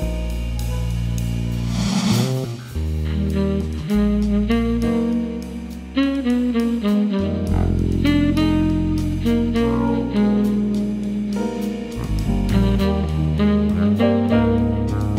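Jazz band playing: a saxophone carries a sustained melody over a fretless electric bass line and drums with cymbals.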